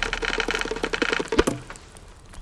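Logo sound effect: a fast wooden rattling clatter of about a dozen clicks a second, cut off by a single sharp knock about one and a half seconds in.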